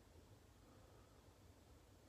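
Near silence: faint, steady room tone with a low hum.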